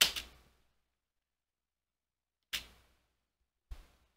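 Near silence between words, broken by a brief soft noise about two and a half seconds in and a short sharp click near the end: a computer keyboard key press, the spacebar stopping timeline playback.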